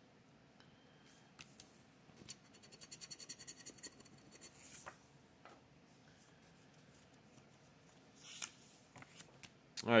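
Faint, rapid scratching of a scratch-off lottery ticket with a handheld scraper for about two seconds, followed by a soft swish and a click, and another paper swish near the end as the next ticket is laid down.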